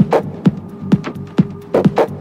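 Techno music: a steady kick drum at about two beats a second, each hit dropping in pitch, under a sustained droning synth tone and crisp percussion ticks.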